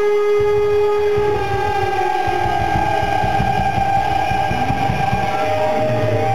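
Live rock band through a distorting camera microphone: a held electric guitar note that glides upward in pitch, with drums coming in about half a second in and playing on underneath.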